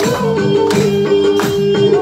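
Music with a held, repeating melody over a steady percussive beat.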